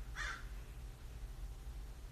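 A crow caws once right at the start, the last of a quick run of three harsh caws, followed by a faint low hum.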